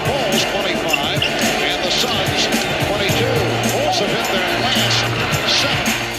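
On-court basketball game sound: a ball dribbling on hardwood and sneakers squeaking, with arena crowd noise, over background music.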